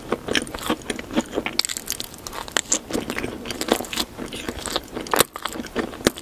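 Close-miked chewing of a mouthful of sprinkle-topped, green-glazed cake: a dense run of crunches and crackles, with one louder crunch near the end.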